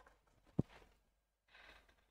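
A quiet room with one short tap about half a second in and a faint soft noise near the end.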